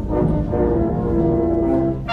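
High school symphonic band playing held chords, carried by low brass and woodwinds.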